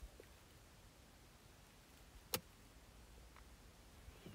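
Near silence: room tone, broken by one sharp click a little over two seconds in, a fingertip tap on a phone touchscreen.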